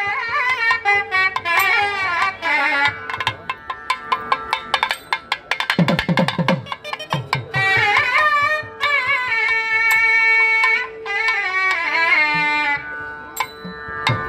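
Periya melam temple music: a nadaswaram plays a wavering, ornamented Carnatic melody over a steady drone, with thavil drum strokes. About four seconds in, the melody thins out under a fast, dense run on the thavil with deep, falling bass booms, and then the nadaswaram melody returns.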